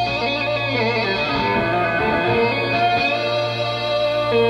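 Serum software synthesizer played live from a LinnStrument through an electric-guitar amp simulation, sounding like an overdriven electric guitar. A busy run of sliding, bending notes plays over a steady low drone.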